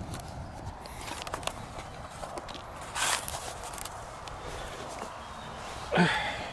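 Footsteps and rustling on grass as a person turns and moves a few steps, with faint clicks early on and one short, louder rustle about halfway through.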